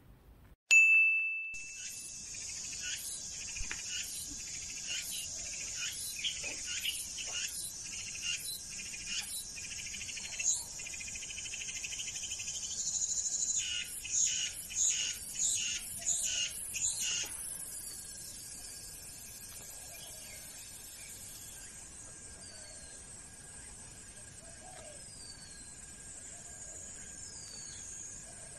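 Outdoor ambience of insects trilling with many short repeated chirps over a high steady hiss. Near the end it thins to a quieter hiss with a few short falling bird-like chirps. A brief high ding sounds about a second in.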